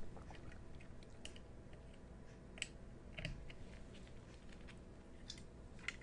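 Faint, scattered small clicks and rustles of hands handling jumper wires and pushing their pins into an Arduino Uno's header sockets, with a few sharper ticks in the middle and near the end.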